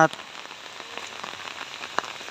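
Steady rain falling, a fine patter of drops.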